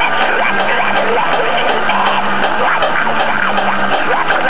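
Loud, noisy lo-fi rock music playing steadily, dense and distorted-sounding, with no breaks.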